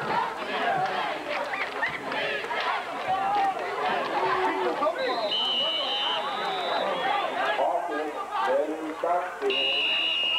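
Spectators in the stands talking and shouting over one another. About halfway through, two steady high whistle tones sound together for about two seconds, and again near the end: referees' whistles blowing the play dead after the tackle.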